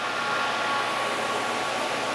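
Steady rushing fan noise with a faint steady whine, unchanging throughout; no distinct knob clicks stand out.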